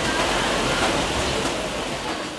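Steady machinery noise of a running vegetable packing line: a roller inspection conveyor carrying a mass of green bell peppers, heard as an even rushing hiss.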